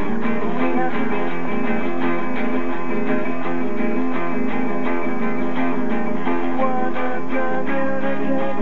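Guitar music, strummed and plucked: an instrumental passage of a song, with no voice.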